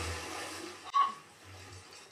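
Rushing, splashing water from an animated film's soundtrack, fading away over the first second, followed by a short sharp sound about a second in.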